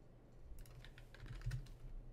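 Faint clicking of a computer keyboard and mouse, with a quick run of keystrokes in the second half, over a low steady hum.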